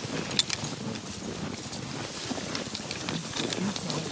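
Footsteps crunching through snow at a walking pace, with small irregular crunches.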